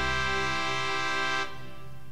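An acoustic guitar's final chord rings out. About one and a half seconds in, its upper notes stop abruptly and only a quieter low tone is left.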